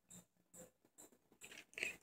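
Near silence: faint handling of a plastic DVD case, with a small click about a second and a half in and a brief faint rustle near the end.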